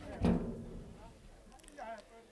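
A single dull thump about a quarter second in, dying away quickly, then distant voices calling out across an outdoor football pitch near the end.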